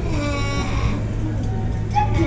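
Voices in a large reverberant hall over a steady low hum and constant background noise.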